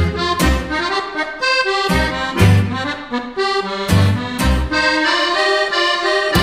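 Accordion music with held chords over a recurring low bass beat.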